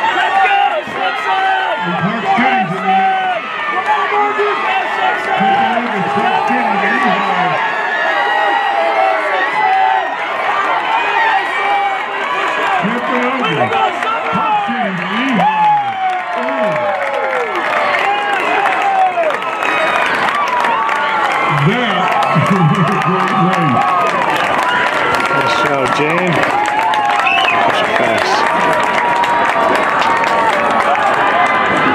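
Stadium crowd cheering, yelling and clapping as a 4x400 m relay race finishes, with one man's voice close by shouting in several bursts.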